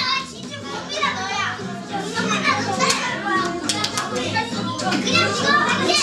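A room full of young children chattering and calling out all at once over background music with a steady, repeating bass line.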